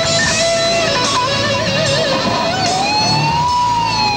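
Electric guitar played through an amplifier, a lead line of sustained notes with wide vibrato. About two seconds in, one note is bent slowly upward and held, then eases back down near the end.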